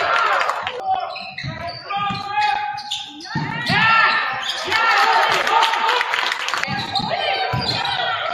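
Live basketball game sound in a gymnasium: sneakers squeaking in short high chirps on the hardwood court, the ball bouncing with low thuds, and voices of players and spectators echoing in the hall.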